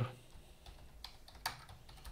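Typing on a computer keyboard: a handful of light, separate keystrokes, the loudest about one and a half seconds in.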